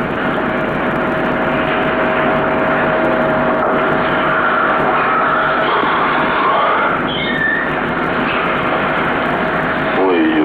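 Steady, loud background noise with a constant mid-pitched hum, of the kind made by a running vehicle or machinery under a recording.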